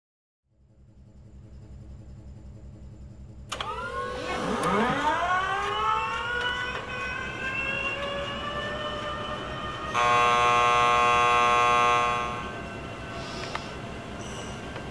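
Sound-design score: a low pulsing hum, joined about three and a half seconds in by several tones that sweep up in pitch and then hold. Near the end a loud, steady buzzing alarm sounds for about two seconds and then fades.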